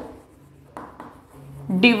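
Chalk writing on a chalkboard: faint scratches and short taps of the chalk as letters are formed.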